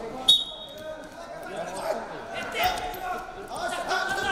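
A referee's whistle blows once, a short, sharp, high blast about a moment in, signalling the start of the wrestling bout. Voices echo through the large hall around it.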